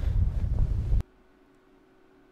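A loud, deep rumbling noise from the episode's soundtrack that cuts off abruptly about a second in, leaving only a faint steady hum.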